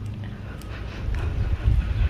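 Wind rumbling on the phone's microphone, a low buffeting that grows stronger about a second in.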